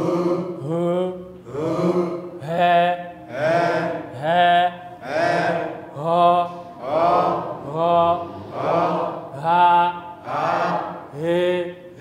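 Voices chanting the Dinka breathy vowels (ä, ë, ï, ö, ɛ̈, ɔ̈) one syllable at a time in a steady rhythm, a little more than one syllable a second, each syllable sliding up in pitch at its start.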